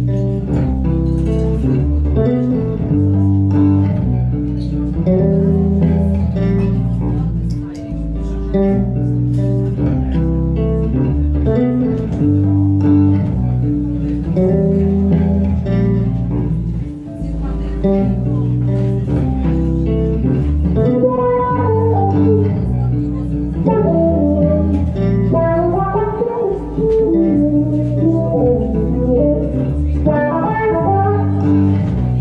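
Fender Jazz Bass electric bass played solo, improvising on a jazz ballad with held low notes. Higher melodic phrases come in over them in the second half.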